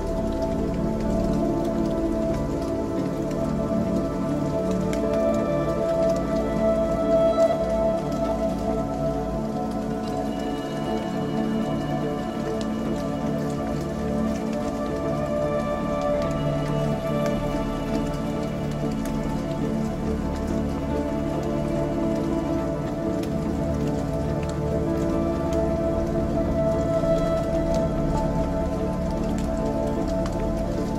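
Ambient music: slow, sustained drone chords that shift gradually, over a soft rain-like patter of fine crackles.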